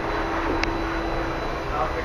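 Steady background noise with a constant low hum, and one faint tick a little over half a second in.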